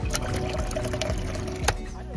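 Water running from a brass tap into a stainless steel pot, a steady pouring and filling sound. There is a sharp click near the end. Background music with a steady beat plays underneath.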